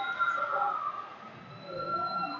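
Indistinct background chatter of voices in a large sports hall, quieter than the shouting around it and dipping briefly in the middle.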